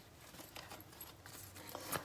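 Tarot cards being shuffled by hand: a faint rustle with scattered light clicks of card edges.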